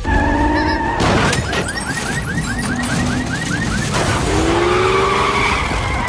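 Film soundtrack mix of music and car sound effects: a low rumble throughout with tyres skidding, and a rapid chirping warble of about four pulses a second from about one to four seconds in. A long high tone slowly falls near the end.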